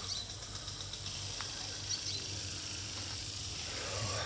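Automatic garden sprinkler spraying water: a steady hiss.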